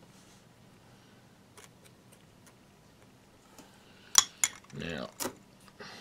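A few faint clicks, then two sharp clicks from small hard items being handled, followed about five seconds in by a short strip of masking tape pulled off its roll with a brief rasping squeal and torn off with a click.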